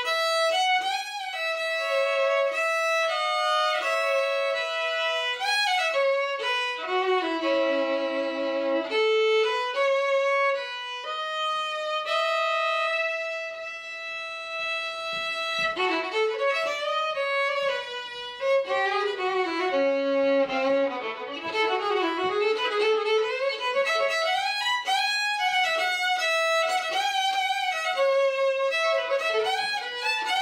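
Unaccompanied violin played with the bow: a melodic solo with sliding, moving lines, some double stops, and a long held note about halfway through, then busier passages.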